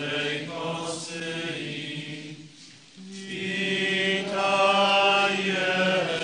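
Voices singing a slow communion hymn in long held notes, two phrases with a short break about three seconds in, the second phrase louder.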